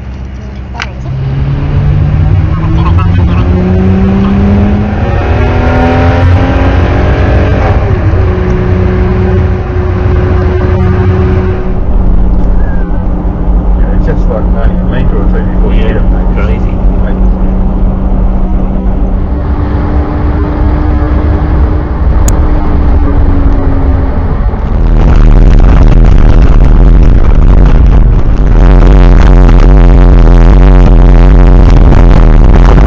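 Vehicle engine heard from inside the cab, climbing in pitch several times as it accelerates through the gears, then holding a steady pitch while cruising. A louder, denser sound, likely music, comes in near the end.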